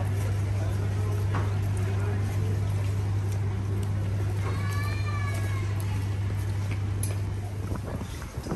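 Shop background with a strong steady low hum and faint distant noise. About halfway through comes one short, high, voice-like call that rises and falls. The hum fades out near the end.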